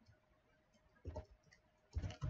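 Faint computer keyboard keystrokes: a couple of short key clicks about a second in and another at the very end, over a faint steady hum.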